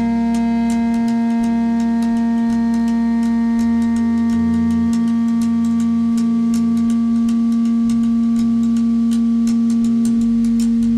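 Electric guitar holding one long note that does not fade, while slow changing bass notes move underneath and a faint steady ticking keeps time.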